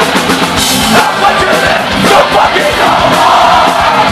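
A post-hardcore band playing loud live through a club PA: distorted electric guitars and drums, with the crowd shouting along.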